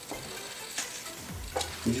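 Steady low hiss with two faint brief rustles or taps, about a second in and again near the end.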